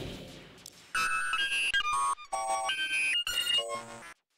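Sung intro music fading out, then a short melody of beeping electronic synthesizer notes that step from pitch to pitch two or three times a second.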